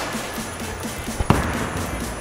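A bowling ball is released and lands on the lane with a single sharp thud about a second and a quarter in, the loudest sound here, followed by a low rumble as it rolls away. Background music with a steady beat plays throughout.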